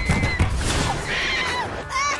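A cartoon character's high, drawn-out scream that cuts off about half a second in, over a rapid run of low bumps, followed by a short noisy flurry and a falling cry. A boy starts laughing right at the end.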